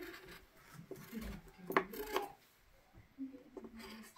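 Crayon rubbing on paper in short, irregular strokes while a picture is coloured in, with a brief quieter pause a little past the middle.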